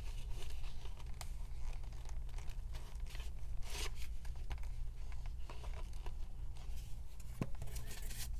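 Paper cards rustling and scraping as they are slid into and out of the slots of a zippered wallet, a string of short strokes with one longer swish a little before halfway. A steady low hum runs underneath.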